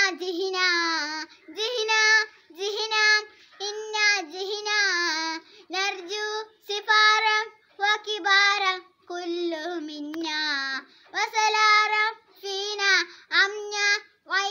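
A young girl singing an Arabic song solo and unaccompanied, in short held phrases of about a second each, with brief breaths between them.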